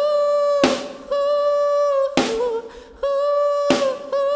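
Live dark pop ballad: a singer holds long wordless notes at a steady pitch, each dipping slightly at its end, over sparse drums. A single drum hit lands three times, about every one and a half seconds.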